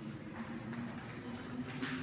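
Quiet room tone with a steady low hum, and faint rustling of clothing and a chair as a person sits down in a lounge armchair.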